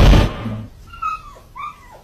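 A loud rushing noise cuts off just after the start. It is followed by two short, high whimper-like calls, each bending in pitch, about half a second apart.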